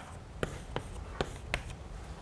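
Chalk on a blackboard: a series of sharp taps and short scratches, about three a second, as short strokes are drawn.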